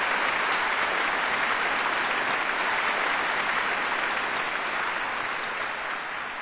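A large audience applauding steadily in a big concert hall, the clapping easing off slightly near the end.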